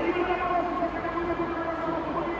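Electric ice-racing cars' motors whining at a steady pitch.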